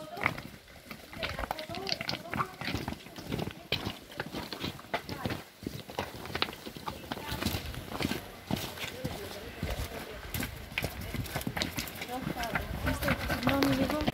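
Several people's footsteps crunching and stones clattering underfoot on a loose rocky path as they carry a stretcher, in many irregular knocks, with faint voices underneath.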